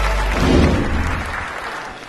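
Audience applauding, fading away toward the end, over the last low notes of music that die out about halfway through.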